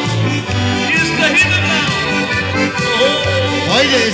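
Live Bavarian-style folk band playing: accordion melody over an electric bass line with a steady, regular beat.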